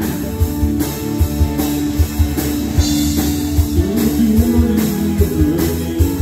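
Live band playing an instrumental passage of a rock song: electric guitar over a drum kit keeping a steady beat.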